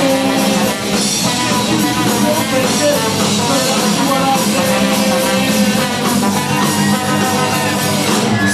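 Live third-wave ska band playing loud, with guitar and a horn section.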